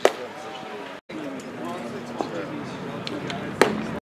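Two sharp leather pops of a baseball hitting a glove, one right at the start and a louder one near the end, over people talking in the background.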